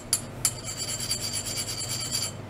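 Metal rods being tapped twice, then about a second and a half of steady, high-pitched metallic ringing rasp, over a low steady hum.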